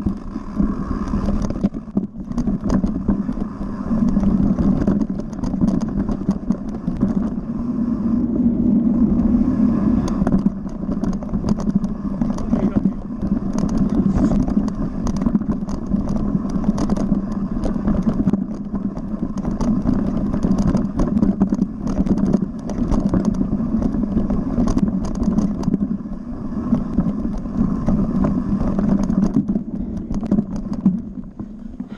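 Mountain bike descending a rough forest trail at speed, heard close up from the handlebars: continuous tyre rumble and air rushing past, broken by frequent short clicks and knocks as the bike rattles over roots and rocks.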